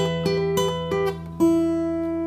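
Takamine steel-string acoustic guitar fingerpicked: a low bass note rings under a short melody of single notes on the top strings at the 12th fret, fretted rather than played as harmonics. A new note comes in about every third to half second, and the last one, about one and a half seconds in, rings on.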